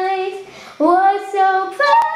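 A young girl singing long held notes: one note fades out about half a second in, and after a brief pause a new note slides up and is held, stepping higher near the end.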